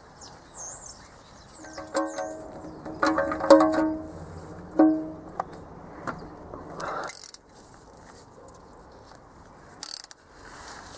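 Several ringing metallic clinks of a steel socket spanner on the sump drain plug: one about two seconds in, a quick run of three more a second later, and another near five seconds. Faint bird chirps come in the first two seconds.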